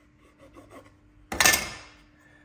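Pine members of a mortice and tenon joint pushed together by hand: one brief wood-on-wood scrape about a second and a half in, after a few faint handling sounds.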